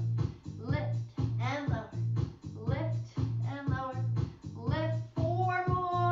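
Background music with a steady bass beat, about two beats a second, under a singing voice.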